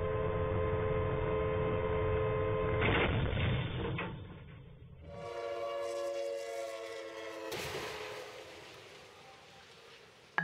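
A train horn blowing two long blasts a couple of seconds apart, with a low rumble under the first. Just after the second blast a sudden loud rush of noise sets in and fades away.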